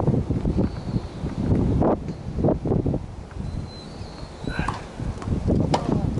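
Wind rumbling on the microphone, with several sharp knocks of a tennis ball being struck and bouncing on the hard court.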